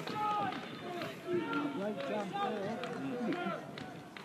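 Voices of players and spectators calling out across an open football pitch, several overlapping and fainter than a close voice.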